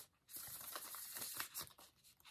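Tarot cards being shuffled by hand: a faint rustle of cards sliding against each other with many quick small clicks, lasting about a second and stopping before the end.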